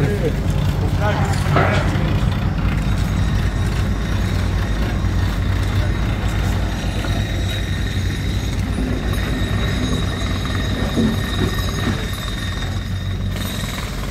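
Diesel engine of road-works machinery running steadily, a continuous low drone.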